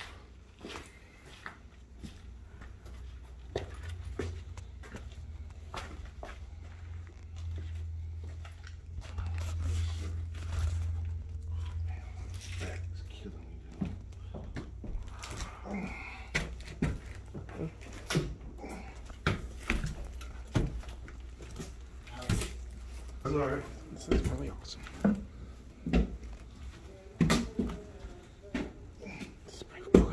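Footsteps, scuffs and phone handling knocks on a concrete floor in an empty building, with a low rumble swelling in the middle and faint, indistinct voices.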